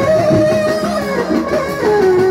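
Loud live dance music with guitar: a held melody note bends, then drops about two-thirds of the way through, over a busy, steady rhythm.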